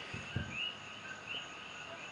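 A pause between words. Faint, short high chirps come irregularly in the background, with a brief soft low sound about a third of a second in.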